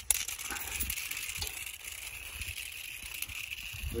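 Beyblade spinning tops, just launched with ripcords, spinning on concrete: a faint, steady high whirr, with a few light ticks and a low rumble underneath.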